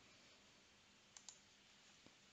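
Near silence with two faint, quick computer mouse clicks a little over a second in.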